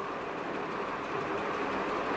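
Steady background hiss of room noise with no distinct events.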